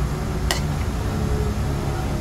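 A metal spatula stirring vegetables in a frying pan, with one sharp clink against the pan about half a second in, over a steady low rumble.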